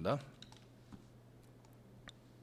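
A few faint, separate computer keyboard keystrokes over a steady low hum.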